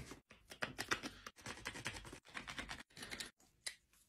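Rapid, irregular scratching strokes of a hand tool cutting a groove into a caribou handle piece for the blade, several strokes a second, thinning out near the end.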